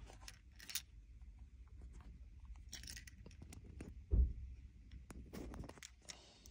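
Faint clicks and rustling of hands handling a car key and its small transponder chip while the chip is fitted into the key, with a dull low thump about four seconds in.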